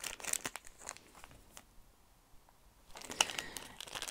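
Clear plastic packaging crinkling as it is handled, in short irregular crackles; it goes quiet for about a second in the middle, then the crinkling resumes near the end.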